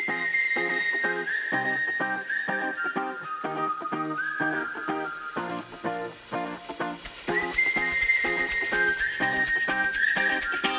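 Upbeat background music: a whistled melody of long held notes stepping downward, over short rhythmic plucked chords at about two a second.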